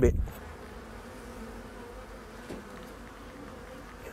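Settled swarm of honey bees buzzing in a steady hum.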